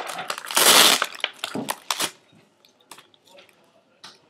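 Oreo cookies being snapped in half: a loud crunch about half a second in, followed by a few short sharp clicks as the pieces break and are set down.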